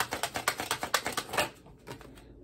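A deck of tarot cards being shuffled hand to hand: a rapid, even patter of about eight card flicks a second that stops about a second and a half in.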